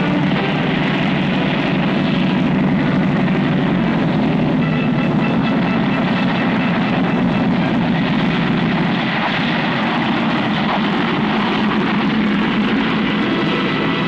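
Piston engines of a propeller airliner running loud and steady as it lands and taxis on the runway.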